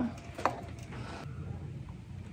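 Handling noise: a single light tap about half a second in, then faint low room hum.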